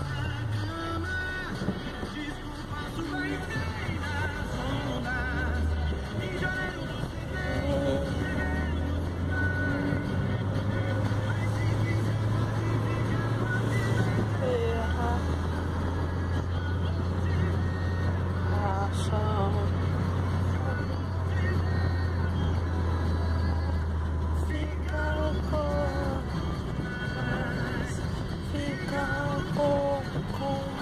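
A song with singing playing on the car's stereo, over the steady low drone of the car driving.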